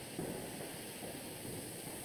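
Faint, steady background hiss of a webinar's audio line between answers; no distinct sound event.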